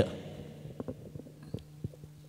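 Low steady hum from a live-stream microphone setup, with a few faint clicks scattered through it.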